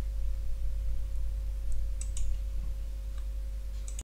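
Steady electrical hum and hiss with a thin constant tone: the noise floor of a cheap Trust Starzz electret USB microphone, whose noise level its owner calls a bit high. A few faint clicks come about two seconds in.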